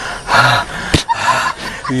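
A man gasping for breath: two heavy, breathy gasps with a short sharp click between them.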